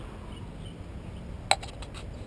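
A single sharp metallic click about one and a half seconds in, over a low steady rumble.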